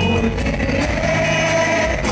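Indie rock band playing live on stage, heard loud and full from within the audience: sustained notes over a dense band sound with no break.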